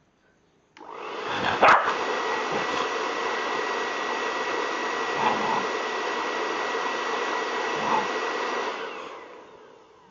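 Electric hair dryer switched on about a second in, blowing steadily with a whine running through its rush, then switched off near the end, its motor winding down. A sharp knock comes shortly after it starts.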